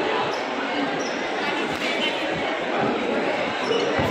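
Voices talking in a large, echoing hall, with several dull thuds.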